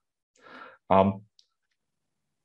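A man's voice in a pause: a faint breath, then a short voiced hesitation sound about a second in, with dead silence before and after.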